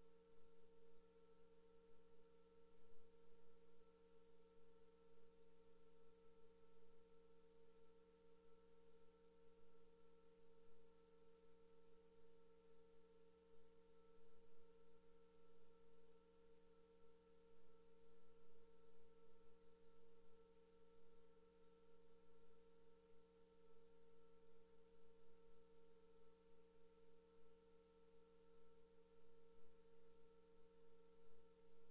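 Near silence: a faint, steady hum made of several fixed tones over a low hiss, with nothing else happening.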